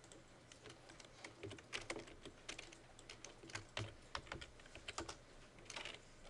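Faint, irregular keystrokes on a computer keyboard, some in quick runs, as a software command is typed in.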